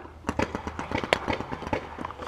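Paintball markers firing: quick, irregular runs of sharp pops, several a second, with one louder pop a little past the middle.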